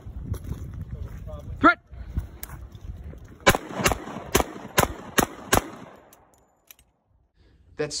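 Six pistol shots from an HK USP .45 ACP Compact fired in a quick, evenly paced string, a little under half a second apart.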